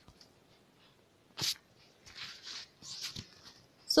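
Quiet room tone with a short, sharp sniff-like breath about a second and a half in, followed by a few soft breaths close to the microphone.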